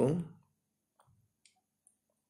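A voice trailing off in the first half-second, then three faint, short clicks of a pencil and drafting compass being set against the drawing sheet and ruler.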